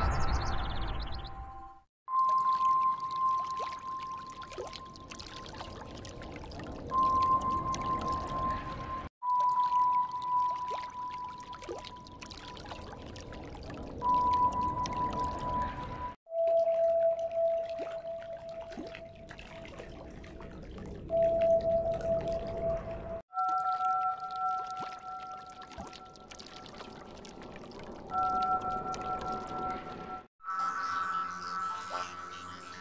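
The same short intro sound effect, a held electronic tone over a noisy hiss with scattered clicks, plays four times in a row, each about seven seconds long with a brief silence between. In each repeat the tone breaks off and comes back near the end. The repeats are pitch-shifted: the third is lower, and the fourth has two higher tones together.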